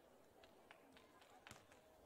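Near silence, with a few faint, brief ticks.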